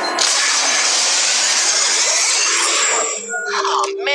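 Cartoon alien-transformation sound effect from the Omnitrix: a loud, dense electronic rushing whoosh lasting about three seconds. It gives way to shorter tonal sounds near the end.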